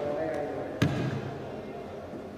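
A single knock about a second in, with a short low ring after it, over a murmur of distant voices.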